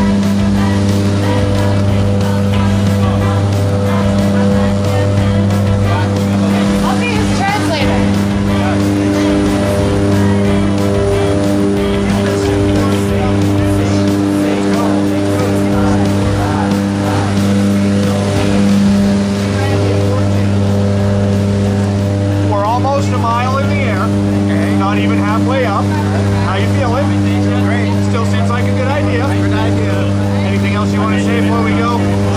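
Steady, loud drone of a propeller aircraft's engines heard from inside its cabin in flight, with people's voices talking over it in places.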